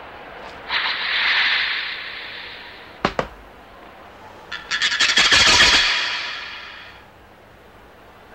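Cartoon sound effects: a rushing whoosh about a second in, a sharp click near the three-second mark, then a louder, brighter swish from about four and a half seconds that slowly fades out.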